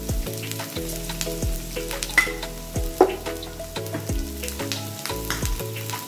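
Chopped onion, ginger and green chilli sizzling in hot oil in a frying pan, with scattered crackles and a couple of louder pops. Steady low tones that change in steps run underneath.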